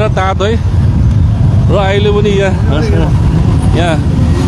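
Many motorcycle and scooter engines running together at low speed, a dense low rumble, with voices shouting over it near the start, about halfway through and near the end.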